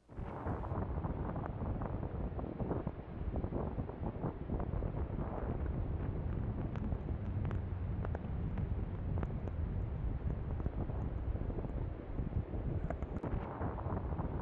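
Strong blizzard wind buffeting the microphone: a steady, deep rumbling rush with no letup.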